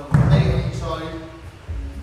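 A pair of dumbbells set down on the gym floor with a single heavy thud just after the start, over background music with vocals.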